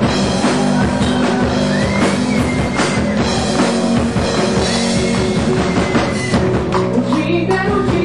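Live band playing a rock song on drum kit, bass guitar and guitar, with some singing.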